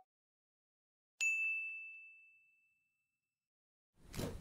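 A single high, bell-like ding, struck about a second in and ringing away over about a second and a half.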